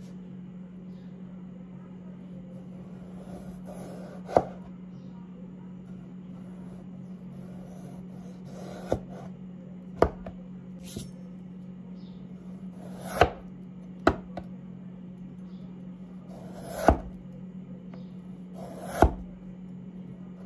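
Santoku-style knife with a dimpled blade slicing a peeled raw potato into thin rounds on a wooden cutting board: a soft scrape through the potato, then a sharp knock of the blade on the board, about seven times at irregular intervals. A steady low hum runs underneath.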